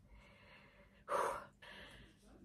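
A woman's single short, sharp intake of breath about a second in.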